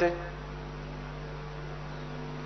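Steady electrical mains hum, a few constant low tones, in a pause with no speech. A man's voice trails off just at the start.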